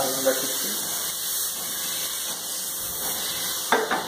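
Butter melting and sizzling in an aluminium kadai on a gas burner, a steady hiss as it heats for frying onions.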